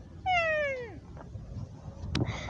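A single high animal call that slides steadily down in pitch and lasts under a second, like a meow or a young goat's bleat.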